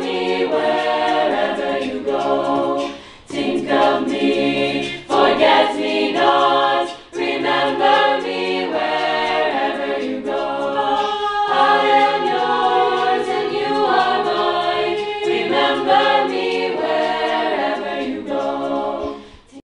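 Mixed-voice school choir singing together in harmony, sustained phrases with short breaks between them.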